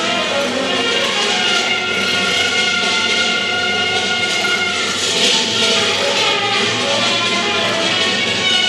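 Small jazz ensemble playing a freely improvised passage, several long held tones overlapping one another.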